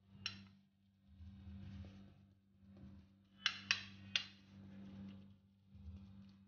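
A metal spoon clinks and scrapes against a stainless steel plate while soft cooked semolina is pressed and spread flat. There is one sharp clink about a quarter second in, then three quick clinks about three and a half to four seconds in, over a steady low hum.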